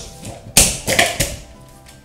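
A glass jar being picked up and handled, giving a few sharp knocks and clatters in the first second or so, over background music.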